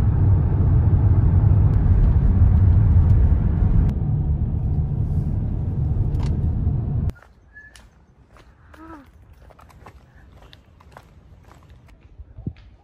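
Car driving at road speed, heard inside the cabin as a loud, steady low rumble of road and engine noise. It cuts off suddenly about seven seconds in, leaving quiet outdoor background with a few faint chirps and clicks.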